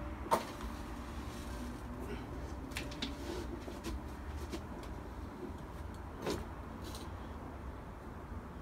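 Steady low wind rumble on the microphone, with a few short scratches and clicks as long matches are handled and struck, a cluster of them about three seconds in.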